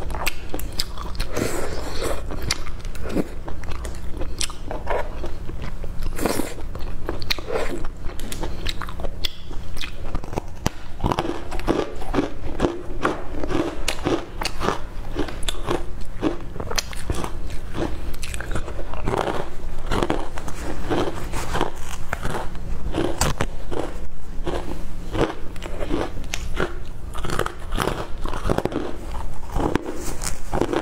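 Close-miked crunching and chewing of crispy fried dough twists: a quick, uneven run of crunches throughout, with wet mouth sounds between bites.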